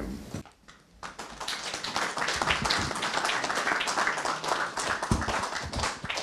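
A small audience clapping, starting about a second in and going on to near the end.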